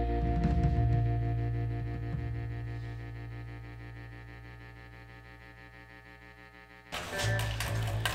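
A band's final chord on electric guitar and bass ringing out and slowly fading away over about seven seconds. Near the end it is cut off by a sudden louder burst of studio room noise with a low hum.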